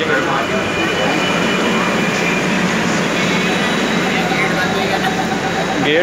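Steady noise inside a metro train coach standing at a platform, with passengers' voices over it. A steady tone joins about four seconds in.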